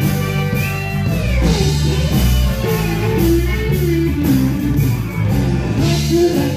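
Live blues band playing an instrumental passage: drums and bass under a lead melody line with a bent note about a second in.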